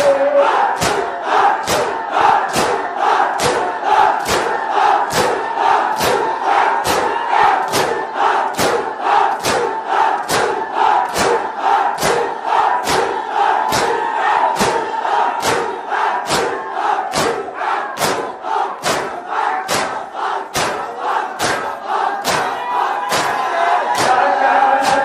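A crowd of mourners chanting a noha together, with rhythmic chest-beating (matam) striking sharply about twice a second.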